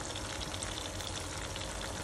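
Battered salmon belly strips deep-frying in hot oil: a steady bubbling sizzle.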